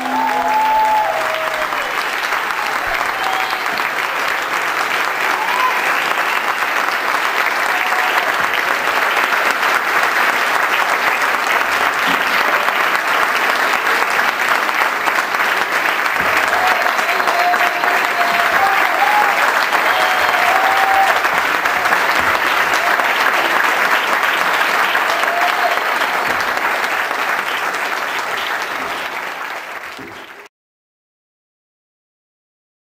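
Theatre audience applauding a concert, with a few voices calling out over the clapping; the applause fades away near the end.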